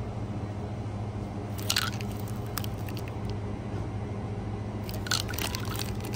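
Plastic-packaged magnets rustling and crinkling as they are flipped through on a peg rack by hand, in short bursts about two seconds in and again near the end, over a steady low background hum.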